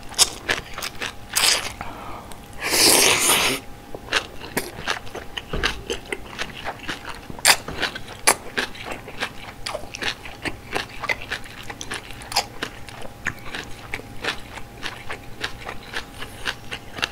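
Close-miked slurping of malatang noodles and bean sprouts, with a long slurp about three seconds in. It is followed by steady chewing: many short, wet clicks of the mouth working through the food.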